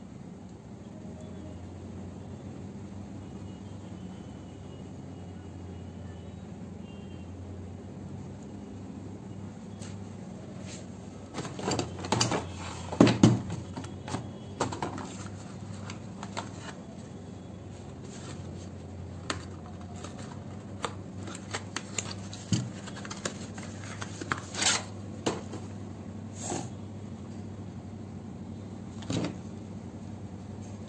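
Handling noise of an unboxing: clicks, knocks and rustles of paint tubes and cardboard packaging being picked up and turned over. They start about ten seconds in, are loudest in a cluster a couple of seconds later, then come scattered until near the end, all over a steady low hum.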